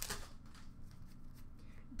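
Trading cards handled by hand: light sliding and flicking of card stock against card stock as a stack is sorted, with a few soft ticks.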